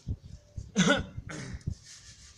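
A person close to the microphone coughs once loudly, a little before a second in, followed by a weaker second cough.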